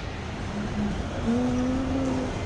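Shopping-centre atrium ambience: a steady wash of background noise from the open multi-level hall, with a faint held tone in the second half.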